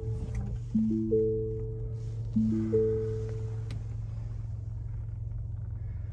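Lincoln Navigator dashboard chime, a rising three-note mallet-like tone repeating about every 1.6 s and stopping about four seconds in. Under it is the steady low hum of the 3.5-litre twin-turbo EcoBoost V6 idling just after start-up.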